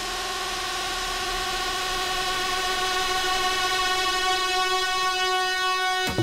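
Breakdown in a progressive house track: a sustained synthesizer chord held without drums, swelling slowly in loudness.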